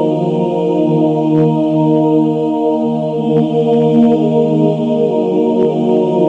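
Background music of slow, long-held notes, several pitches layered and changing slowly.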